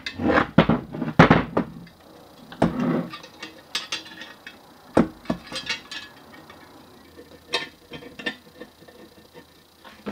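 Metal parts of a one-arm bandit mechanism clattering and clicking against each other and the workbench as the metal base plate is handled and turned over. A dense run of knocks comes in the first two seconds, then scattered lighter clicks.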